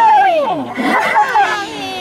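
High-pitched voices exclaiming in long, gliding, falling tones, several overlapping.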